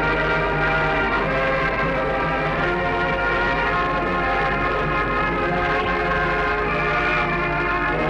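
Band music with brass holding long chords, over a steady low hum.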